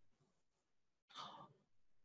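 Near silence, with one short, faint breath a little over a second in.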